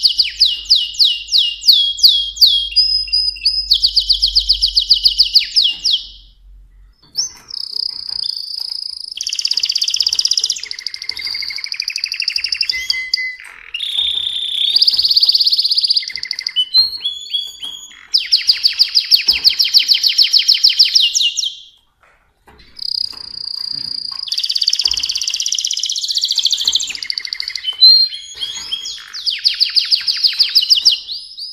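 Mosaic canary singing: high-pitched phrases of fast repeated notes and rolling trills, one after another, broken by short pauses about six seconds in and again around twenty-two seconds.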